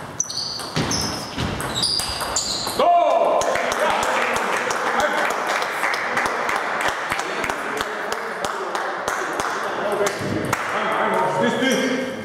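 Celluloid table tennis ball struck by paddles and bouncing on the table in a quick doubles rally, a string of short high pings over the first few seconds. The point ends about three seconds in with a sudden loud burst of shouting. This is followed by a hubbub of voices and clapping that lasts until near the end.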